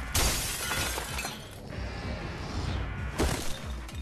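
Glass shattering: a sudden crash about a quarter second in that fades over a second or so, followed by a second sharp crash near the end, over soundtrack music.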